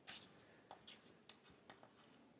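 Chalk writing on a chalkboard: a string of faint, short scratches and taps as the chalk forms letters.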